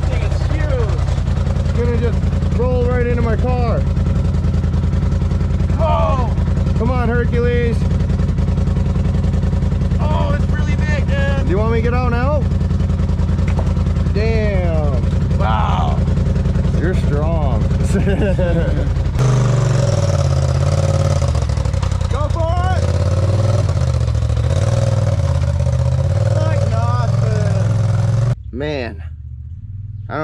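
Polaris RZR side-by-side engine running steadily at idle under voices. About two-thirds of the way in it turns uneven and shifting, then drops away sharply near the end.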